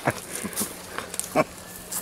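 A person laughing: two short chuckles, one at the start and one a little past halfway.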